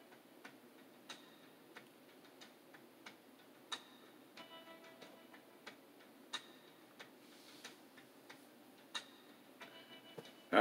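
Faint steady ticking, about three ticks every two seconds, with faint short musical notes in the middle and near the end.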